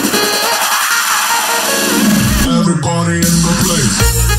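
Electronic dance mix in a breakdown: the bass and beat drop out and a rising noise sweep builds for about two seconds, then synth tones slide downward before the bass comes back in at the end.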